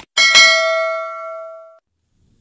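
Subscribe-animation sound effect: a short click, then a bright notification-bell ding struck twice in quick succession that rings out and fades away before two seconds.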